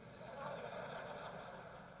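Faint noise from a large audience in a hall, swelling about half a second in and fading away.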